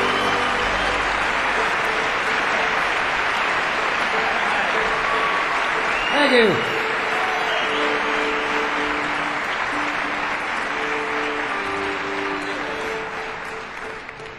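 Concert audience applauding at the end of a bluegrass number, with one falling shout from the crowd about six seconds in. The applause dies away near the end.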